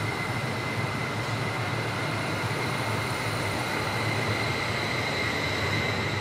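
German regional (Regio) train running past close by: a steady rumble of wheels on rail with a thin, steady high whine above it.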